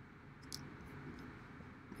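Faint room tone with a few soft computer mouse clicks, the loudest about half a second in.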